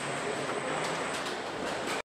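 Car assembly-line machinery in a factory hall: a steady mechanical rush with a thin high whine and scattered clicks and knocks, cutting off abruptly at the end.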